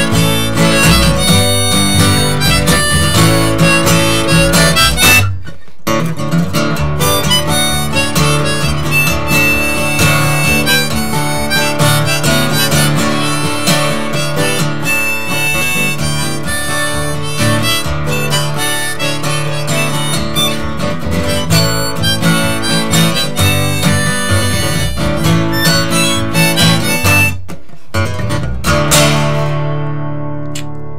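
Live acoustic blues-folk: harmonica played from a neck rack over strummed acoustic guitar, with plucked upright bass underneath. The band cuts out briefly about five seconds in and again near the end, and a final chord then rings out.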